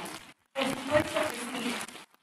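A woman's voice speaking a few words, with the sound cutting out abruptly to dead silence for a moment twice.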